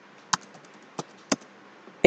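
Typing on a computer keyboard: a handful of separate keystroke clicks, three of them clearer than the rest, spaced irregularly.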